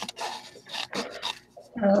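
Scissors cutting out an image from a printed art card, several soft scraping snips and paper rustles in a row, with a woman's voice starting near the end.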